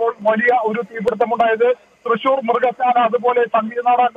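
Speech only: a man reporting in Malayalam over a telephone line, with the thin, narrow sound of a phone call.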